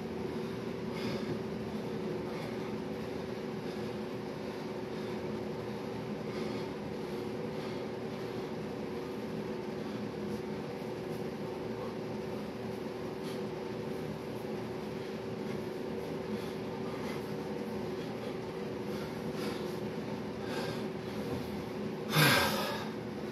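Steady humming drone of room ventilation, with one held tone in it and faint soft puffs now and then.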